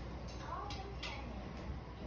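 Light clicks and taps, about three in the first second, as a raccoon and a dog play-fight, with a faint brief voice-like sound among them.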